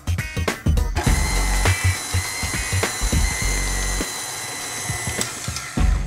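KitchenAid tilt-head stand mixer switched on about a second in, its motor running steadily while it beats muffin batter, then stopping near the end.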